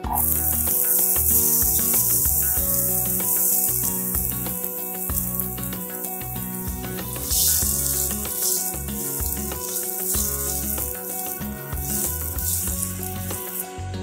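Diced red onion sizzling in hot oil in a frying pan. The hiss starts suddenly as the onion is tipped in, flares up again about seven seconds in as it is stirred, and cuts off just before the end.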